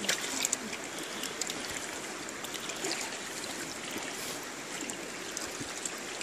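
River water flowing steadily past the bank and boat, a constant rushing with small trickling splashes and a few light clicks.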